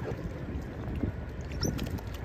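Uneven low rumbling of wind buffeting the microphone, with a few faint clicks and one short high chirp about one and a half seconds in.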